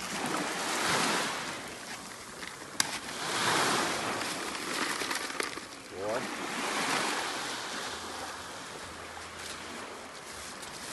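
Small waves washing up a sandy beach, swelling and ebbing every few seconds, with a single sharp click about three seconds in.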